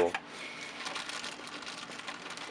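Soft plastic crinkling and rustling as a bag of wires and cables is handled, a faint continuous crackle.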